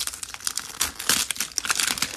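Mini Brands plastic capsule ball being peeled and pried open by hand: crinkling of its plastic wrap and many small crackles and clicks from the shell, densest about a second in. The ball is resisting and hard to open.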